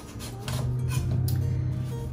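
Chef's knife cutting the rind off a honeydew melon on a cutting board, in several short cutting strokes, over background music with a steady low note.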